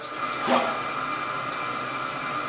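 Steady hum of a boiler plant room's circulating pumps and their motor drives running, with a couple of steady high-pitched tones over it.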